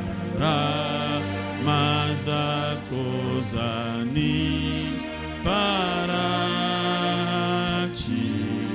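A man singing a slow worship song into a microphone, holding long notes, over steady sustained instrumental chords and bass.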